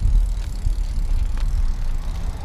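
Low, gusty rumble of wind on the microphone while riding a Juiced CrossCurrent electric bike along pavement, heaviest at the start. A couple of faint clicks come from the bike.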